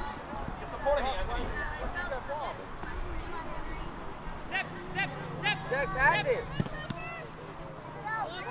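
Indistinct voices of players and sideline spectators at a youth soccer match, with a run of short high shouts about five seconds in. A low steady hum comes in over the second half.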